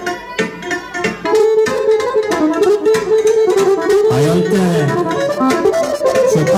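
Live band music: electronic keyboard with saxophone and violin playing a fast melody. It gets louder about a second in.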